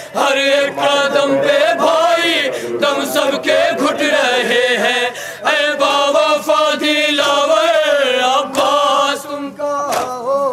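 Several male voices chant an Urdu nauha (Shia mourning lament) together into a microphone, in long wavering sung lines. Sharp slaps of hands on the chest (matam) can be heard beneath the singing.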